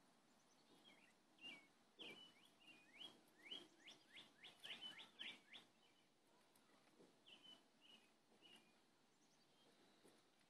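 Faint songbird calling: a run of quick rising chirps, about four a second, through the middle, then a few softer slurred notes near the end.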